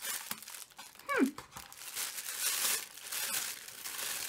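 Packaging being opened by hand: crinkling and rustling as the cardboard calendar box and its wrapping are worked open.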